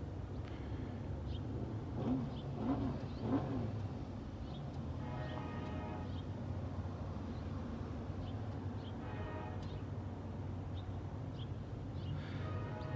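A vehicle engine running at idle, a steady low hum, with faint brief tonal sounds about five and nine seconds in.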